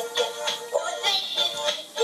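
A children's musical toy playing a song: a melody with a singing voice.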